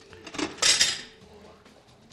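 Brief clatter of tableware being handled, lasting about half a second, just under a second in.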